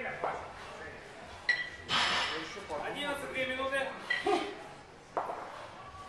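Two competition kettlebells worked through a long-cycle (clean and jerk) rep: a metallic ping as the bells knock together, and the lifter's sharp, forceful exhales on each effort. Voices talk in the background.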